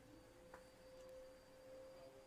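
Near silence: room tone with a faint, steady single-pitched hum and one tiny click about half a second in.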